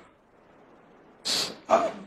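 A man's voice: two short breathy vocal sounds, a sharp outbreath and then a brief voiced sound, about a second and a half in.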